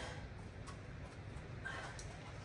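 Quiet workshop room tone with a low hum, one faint click about two-thirds of a second in, and a soft short sound near the end.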